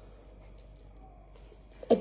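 Quiet indoor room tone with a faint low steady hum and no distinct sound events; a woman starts speaking near the end.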